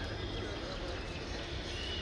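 A pause between a man's phrases in a speech over a public address system, leaving only steady low background noise.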